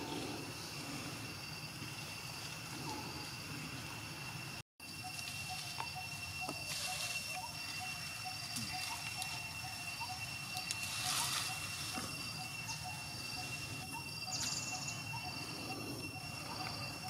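Outdoor forest ambience: a steady high-pitched drone, typical of insects, with a short chirp repeated about two or three times a second through the middle. The sound cuts out for a moment about five seconds in.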